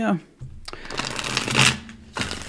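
Tarot deck being shuffled by hand: a rapid flutter of cards starting about half a second in, building, and stopping just before the end.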